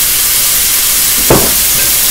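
Chicken and vegetables sizzling steadily in a hot wok as soy sauce is poured in, with a single sharp knock about a second and a half in.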